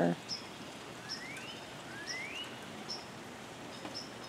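A bird singing: three rising whistled notes about a second apart, with short high chirps between them, over a faint steady hiss.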